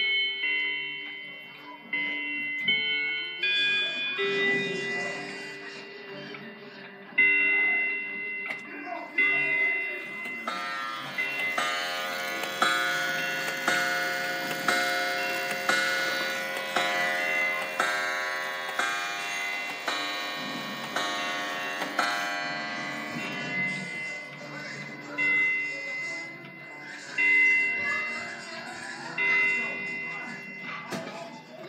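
Many clocks of a collection chiming and striking noon together. Separate chime notes ring in the first seconds. From about ten seconds in, a dense ringing of overlapping chimes and hour strikes comes in, about one strike a second, and it thins out after about 23 seconds into a few lingering chime tones.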